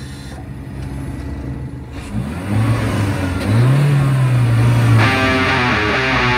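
Opening of a death metal song: a low, droning sound that bends up in pitch about three and a half seconds in, then the full band crashes in with heavy distorted guitars about five seconds in.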